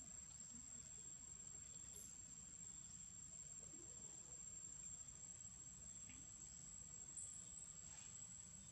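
Faint, steady high-pitched insect trill, typical of crickets, with two brief high chirps, one about two seconds in and one near the end.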